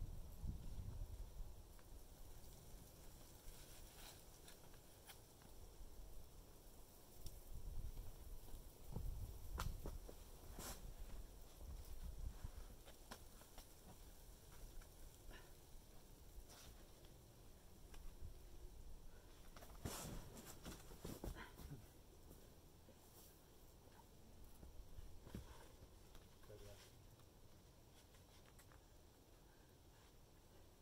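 Near silence with a low rumble and scattered faint scuffs and taps of a climber's hands and rubber shoes on sandstone, with a cluster of them about twenty seconds in.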